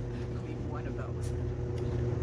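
Steady low mechanical hum, with a faint voice briefly about a second in.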